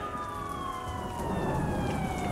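A siren wailing, its pitch falling slowly and steadily, over a low rumble.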